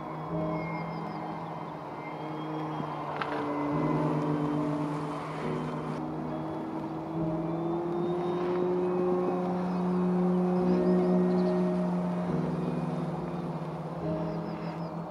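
A single-propeller electric F3A aerobatic model plane in flight: its outrunner motor and propeller give a steady whine that shifts in pitch as the throttle changes, with background music.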